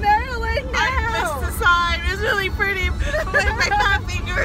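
Young women's voices vocalizing in long, sliding pitches without clear words, over the steady low rumble of a car cabin on the road.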